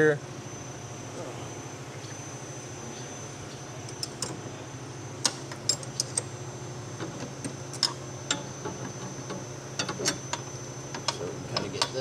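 Scattered light metallic clicks and clinks as a steel linkage piece and its bolts are handled and fitted into a tractor's three-point lever bracket, starting a few seconds in, over a steady low hum.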